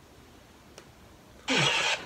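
Quiet room tone for about a second and a half, then a sudden loud burst of noise with a falling low tone, about half a second long, as playback of the video being watched resumes.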